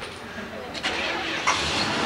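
A vehicle engine starting about a second and a half in, then running steadily, with voices in the background.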